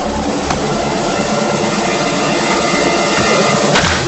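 Cartoon sound effect of a batted baseball flying high: a steady, loud jet-like roar with sustained tones over a pulsing low rumble.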